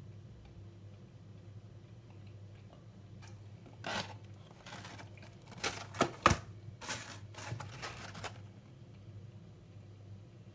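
Handling noise from a cardboard tea box being moved about: a few seconds of rustling and sharp knocks, the sharpest just past six seconds in, over a low steady hum.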